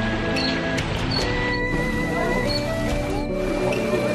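Background music: sustained notes with a few short high chirps early in the passage.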